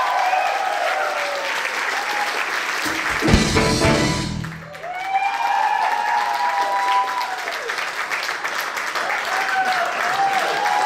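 An audience applauding and cheering, with long rising-and-falling whoops over the clapping. A loud low booming burst comes about three seconds in and lasts a second or so.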